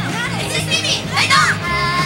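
Recorded pop backing music at an idol live show, with high-pitched voices calling out over it; a held, steady note comes in near the end.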